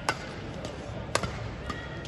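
Badminton rackets hitting a shuttlecock back and forth in a doubles warm-up, three sharp cracks: one just after the start, one just past a second in, and one about half a second after that.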